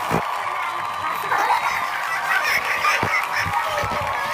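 Seawater splashed by hand, one sharp splash at the start and another about three seconds in, with people's voices calling out between.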